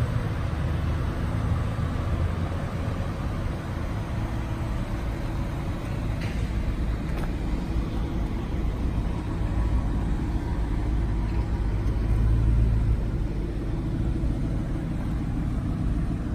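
Car engine idling steadily, a low even drone, swelling slightly about twelve seconds in.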